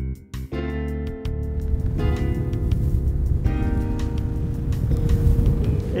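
Background music of sustained chords that change every second or so, over a low, gusty rumble of wind on the microphone.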